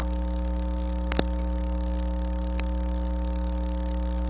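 Steady electrical mains hum on the chamber's sound system: a low, constant hum with higher overtones, and no speech. A few light clicks come through it, one right at the start, one about a second in and one past the middle.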